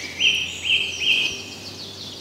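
Small songbirds singing: three short rising whistled notes in the first second, with fainter high twittering carrying on after them.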